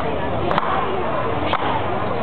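Axes biting into a horizontal log as Basque aizkolaris chop it while standing on it, sharp strikes about a second apart, the first a quick double, over crowd chatter.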